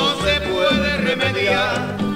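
Latin dance band playing an instrumental passage between sung verses: a lead melody with vibrato over a pulsing bass line.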